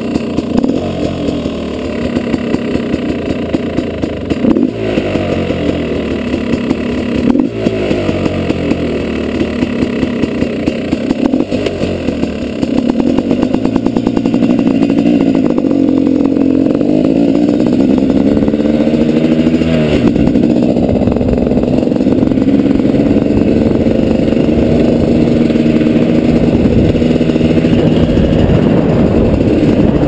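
2012 KTM 250 XCW single-cylinder two-stroke engine running. It is blipped a few times in the first dozen seconds, then runs louder and steadier, with the revs rising and falling.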